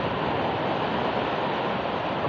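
Ocean surf breaking over rocks and washing up a sandy shore, a steady rush of water.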